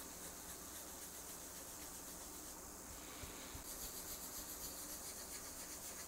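Cloth rag rubbed by a gloved hand over a guitar body's wooden top, blending in colour: a faint, steady rubbing that grows a little stronger in the second half.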